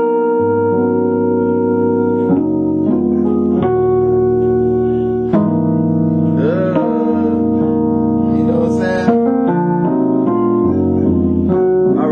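Gospel jazz chords played full-blown on an electronic keyboard: a sustained chord progression with bass notes underneath, the chords changing every second or so.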